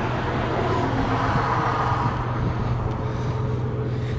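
Steady outdoor background of road traffic: a constant low hum under a broad rush that swells a little midway, like a vehicle going by.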